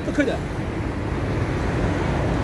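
Steady low rumble of road traffic from cars passing on a busy street.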